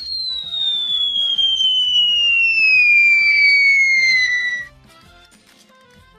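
A comedy sound-effect whistle falling slowly and steadily in pitch for about four and a half seconds, then stopping abruptly. It is the cartoon falling-bomb whistle that comes before an explosion.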